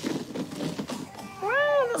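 A person's short, high-pitched vocal exclamation, rising then falling in pitch and lasting about half a second, near the end. It comes after faint rustling and light knocks of people moving about.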